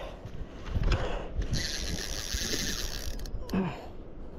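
A spinning fishing reel working under the load of a hooked bat ray: a fast, dense mechanical clicking buzz of reel and drag for about a second and a half in the middle. A short voice sound comes near the end.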